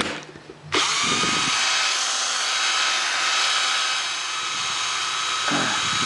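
DeWalt cordless drill motor running free on a NiCad battery pack, starting about a second in with a short rising whine as it spins up, then holding a steady whine.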